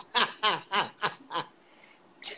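A man laughing in a quick run of short "ha" bursts, about five a second, which fades out about one and a half seconds in.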